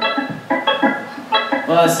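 Stage keyboard on an organ sound playing a quick ballpark-style organ riff: a run of short, separate notes.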